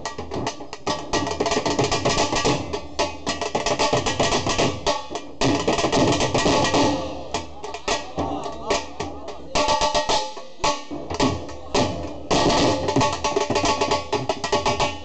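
Dhols, double-headed barrel drums, beaten with sticks in a fast, dense rhythm that runs without a break.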